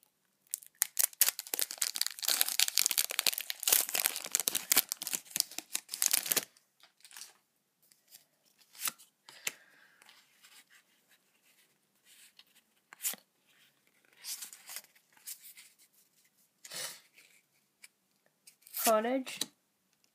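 A Pokémon booster pack's foil wrapper being torn open and crinkled by hand, a dense crackling that stops abruptly about six seconds in. After it come only faint, scattered rustles and clicks as the cards are handled, and a brief word near the end.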